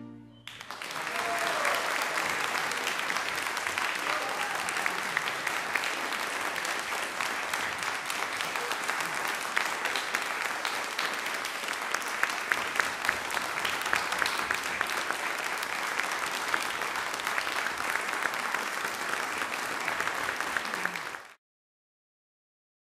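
Audience applauding, starting about half a second in as the final chord dies away, with steady dense clapping that cuts off suddenly near the end.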